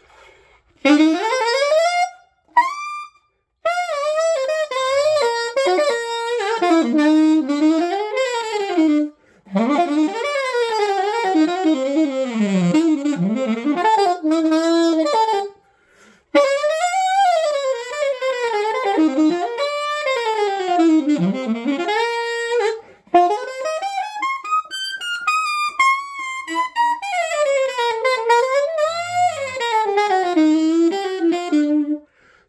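Alto saxophone played solo through a composite reproduction Meyer 9 small-chamber, medium-facing mouthpiece, in quick jazz lines broken into several phrases with short pauses between them. It has a lot of sound.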